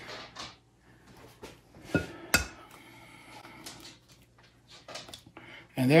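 A chicken egg being cracked for brownie batter: two sharp taps of the shell about two seconds in, a fraction of a second apart, then faint handling sounds as it is broken open over a glass mixing bowl.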